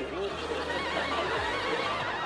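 Studio audience laughing, many voices together.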